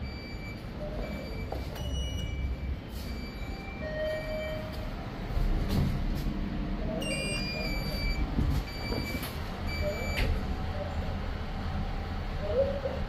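Short electronic beeps from a passenger lift, repeating every half second to a second with a denser run about seven seconds in, over a low hum and rumble, with a few clicks.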